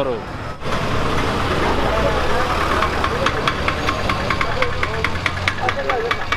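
Busy street ambience: vehicle engines running and a crowd's voices. From about halfway, a steady tapping or knocking comes in, about four strokes a second.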